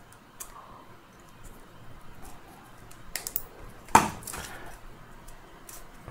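Side cutters snipping through a metal tab strip that joins battery cells, one sharp click about four seconds in, amid light clicks and handling of the metal-clad cell pack.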